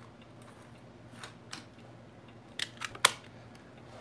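Small clicks from handling a telephoto camera lens: two faint ones a little past a second in, then a quick cluster ending in one sharp, loud click about three seconds in.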